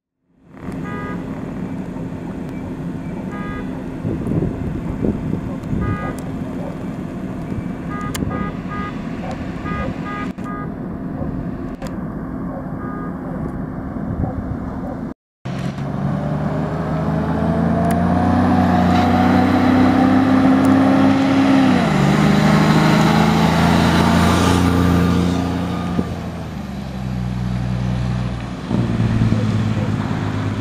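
Fire truck diesel engines. First a steady engine hum with a few short horn toots. After a cut, a fire engine's diesel accelerates hard, its pitch rising and then dropping at gear changes, and eases off near the end.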